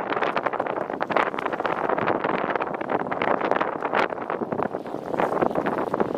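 Wind buffeting the microphone in uneven gusts, a rough rushing noise with frequent crackling pops.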